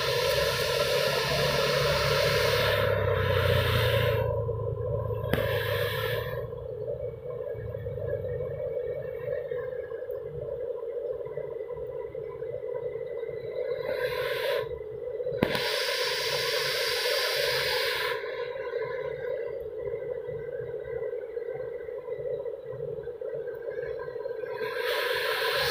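Distant Garuda Indonesia Boeing 737 jet engines running with a steady whine over a low rumble, the rumble fading after the first several seconds. Gusts of wind hiss on the microphone come and go, near the start, after about five seconds and again around the middle.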